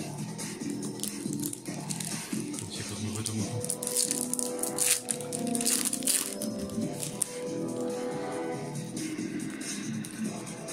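Background music throughout, with the crackle and crinkle of a foil trading-card booster pack being torn open and handled, densest about four to six seconds in.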